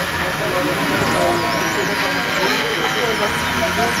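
Several small home-built light-controlled robots sounding at once: overlapping electronic tones that warble and glide up and down in pitch as the light on them changes, over a steady hum.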